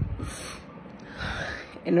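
A woman's audible breaths in a pause between tearful phrases: a short breath just after the start, then a longer, noisier gasping intake in the second half, the breathing of someone struggling to hold back tears, before her voice comes back near the end.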